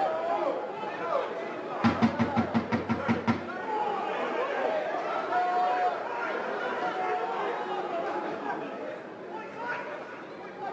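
Indistinct calls and chatter from several voices on and around the rugby pitch, with no clear words. A couple of seconds in comes a quick run of about nine loud, evenly spaced knocks, roughly five a second.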